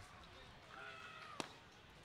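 Faint ballpark ambience with distant voices, then a single sharp pop about a second and a half in as the pitched baseball smacks into the catcher's mitt.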